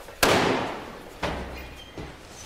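Two heavy bangs: a loud one just after the start that dies away over about a second, then a weaker second one a second later.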